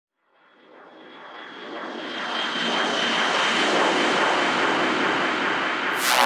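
Synthesized rushing noise swell opening a psychedelic trance track. It fades in over the first few seconds and then holds steady, with a faint high tone running through it and no beat yet.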